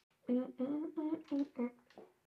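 A woman humming a short tune to herself, a string of about seven brief notes.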